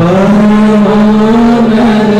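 Loud sung chant on a long held note, coming in suddenly.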